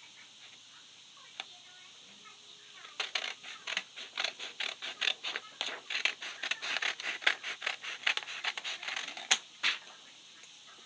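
Scissors cutting through a sheet of paper in a quick run of short snips, several a second, starting about three seconds in and stopping just before the end.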